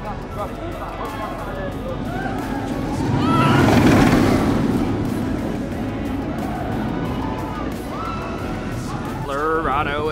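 A roller coaster train rushing past on its steel track, the noise building to a loud peak about four seconds in and then fading away. Background music and voices run throughout.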